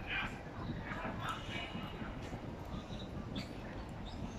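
Quiet eating sounds: a plastic spoon scooping rice in a plastic takeaway container and soft chewing, with short faint clicks and scrapes over a steady low outdoor rumble.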